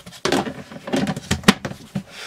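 Red plastic lid being fitted onto a Rubbermaid food-storage container: a run of plastic clicks and rubbing, with one sharp snap about one and a half seconds in.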